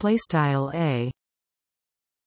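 A synthesized text-to-speech voice reading a few words of narration, stopping about a second in.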